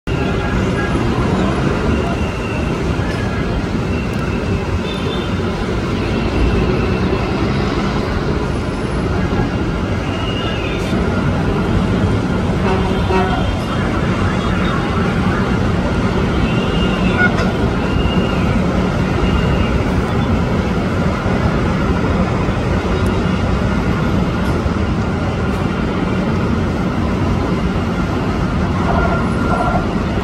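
Steady city traffic rumble heard from high above, with brief faint higher tones now and then.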